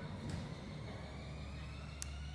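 A motor vehicle's engine running, a steady low rumble with a faint high whine that rises slowly in pitch.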